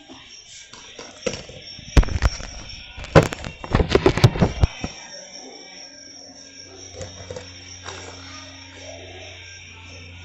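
Knocks and rubbing from a phone camera being handled and repositioned, with a cluster of loud knocks between about two and five seconds in, then a quieter steady hum.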